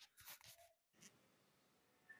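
Near silence, with a few faint short clicks and rustles in the first second.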